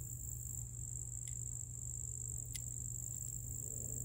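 Steady high-pitched chorus of insects, typical of crickets, with two faint sharp clicks about one and two and a half seconds in from pruning shears snipping pepper stems.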